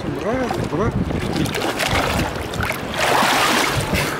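Sea water splashing about three seconds in as a child ducks under the water and comes back up in an adult's arms, over the steady lapping of shallow waves. Short voice sounds come early on.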